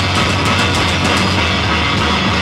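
Live punk rock trio playing an instrumental stretch: electric guitar, electric bass and a drum kit, loud and dense, with a steady beat of cymbal strokes.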